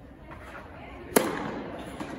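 Tennis racket striking the ball in an overhead smash: one sharp crack about a second in, echoing in an indoor tennis hall.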